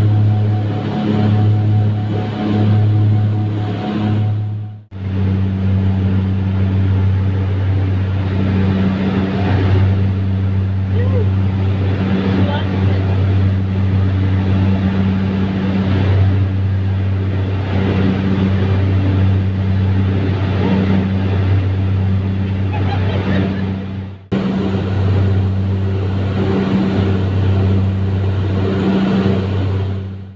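Twin Otter's turboprop engines and propellers droning steadily in cruise, heard from inside the passenger cabin, a low, even hum. It breaks off briefly twice, about five seconds in and near the end.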